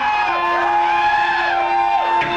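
Electric guitar played live, opening a hard-rock song. It holds one long low note while higher notes bend up and slowly back down.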